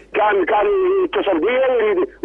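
Speech only: a man talking in Arabic.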